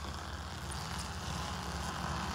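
Best Tugs Alpha A3 battery-electric aircraft tug running under power while towing and turning a light aircraft: a steady low hum with an even whir over it.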